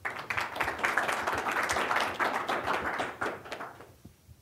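Audience applauding, starting at once and dying away over the last second.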